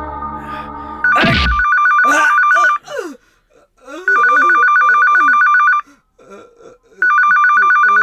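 Electronic telephone ringer sounding in a fast two-tone warble, three rings about a second apart.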